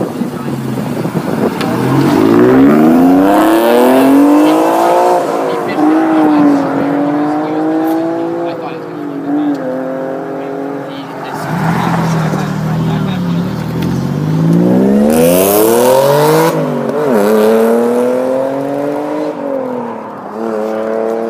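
A first-generation Acura NSX's V6 accelerating hard away from the curb, the engine note climbing and dropping back as it shifts up, followed about ten seconds in by a black Audi sedan doing the same, with its revs rising through the gears again. A short burst of hiss comes partway through the second car's run.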